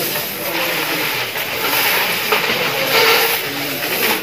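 Steady rustling and jingling of heaps of coins and banknotes being sorted by hand, with faint voices murmuring in the background.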